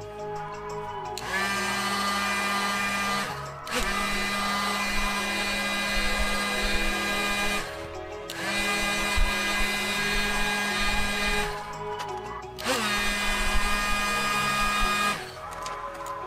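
Heat gun run in four bursts of a few seconds each, its fan motor spinning up with a short rising whine each time it is switched on, warming the phone to soften the battery adhesive. Background music plays underneath.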